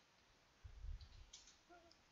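Faint computer keyboard keystrokes as a few letters are typed, a handful of soft taps and clicks over otherwise near silence.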